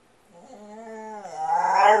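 A dog making one long, drawn-out moaning 'talking' vocalization, Chewbacca-like, that dips slightly and then rises in pitch and gets louder near the end.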